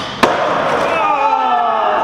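A skateboard and skater hit the concrete floor hard about a quarter second in as a nollie flip is bailed. Scraping and rolling noise follows, and from about a second in a voice trails downward in pitch.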